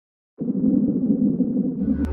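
Logo intro sound effect: a dense, low rumbling whoosh that starts about half a second in and holds steady, swelling into a deep low hit near the end.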